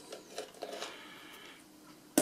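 Faint clicks and light scraping of a small antenna being unscrewed from its threaded mount on a drone's radio controller, mostly in the first second.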